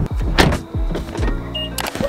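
A car door being pushed shut, with one loud thunk about half a second in, over background music.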